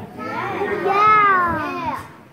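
A long, drawn-out exclamation of amazement in a high voice, like a stretched-out "whooa", its pitch rising and then falling over a second and a half.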